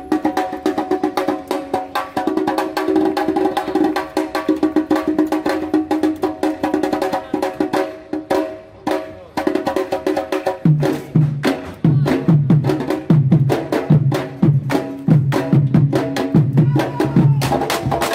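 Candombe drums of a comparsa playing: sticks clack in a fast rhythm on the drums' wooden shells, with a held tone over the first half. About ten seconds in, deeper drumhead strokes join in.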